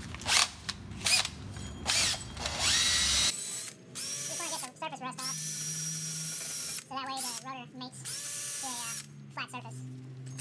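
Cordless drill spinning a wire wheel brush against a rusty wheel hub face: first a few seconds of dense scraping and clatter, then the drill's motor whine in several short runs, stopping and starting with pitch glides as the trigger is let off and pressed again. The brushing clears surface rust from the hub face so the new brake rotor seats flat and does not pulsate.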